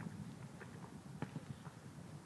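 Faint, scattered knocks on asphalt, about two a second, over a low steady rumble.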